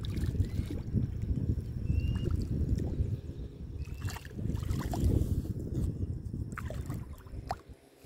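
Water lapping and sloshing against the rock at the shoreline, a steady low splashing, with a couple of faint short chirps about two and four seconds in.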